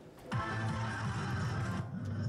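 Electronic jingle from a soft-tip dart machine, starting about a third of a second in and held steady for about two seconds. It marks the end of the player's turn and the change to the next thrower.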